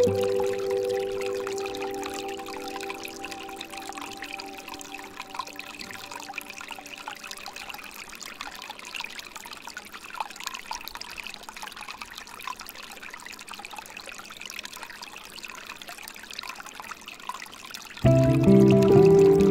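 Water trickling and pouring steadily from a bamboo fountain spout into a pool. A held piano chord fades out over the first several seconds, leaving the water alone.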